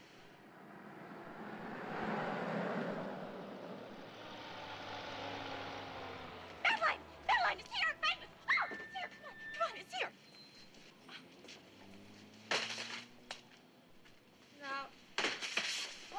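Street traffic swelling and fading as two vehicles pass, then a run of short, sharp calls with a brief steady tone among them.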